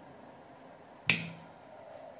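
A single sharp switching click about a second in, as the capacitor-charging circuit on the breadboard is turned on; otherwise quiet room tone.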